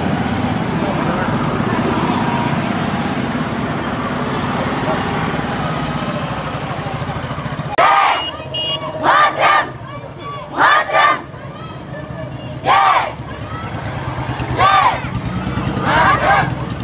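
Several motorcycles and scooters running as they ride past in a group. From about eight seconds in, a crowd of children shouts slogans in unison, loud calls repeating every second or two over the low engines.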